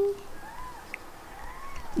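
A drawn-out spoken word trails off right at the start. Then comes a quiet room with two faint, soft hum-like voice sounds and a single small click.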